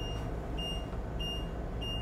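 Lippert auto-leveling system sounding its warning beeps, short high beeps about every 0.6 s, while it auto-retracts the jacks and the air suspension bags refill, over a low steady hum.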